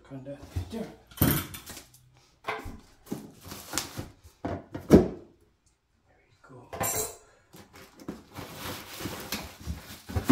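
Plastic packaging and bubble wrap rustling and crinkling as parts are handled inside a cardboard box, in irregular bursts. The loudest burst comes about halfway through.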